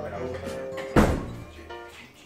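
A door shutting with a single heavy thud about a second in, over background music with held notes.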